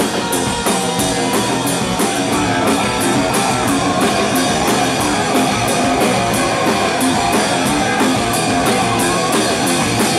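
Rock band playing live, with electric guitar and drum kit and the cymbals struck on a steady beat of about three a second.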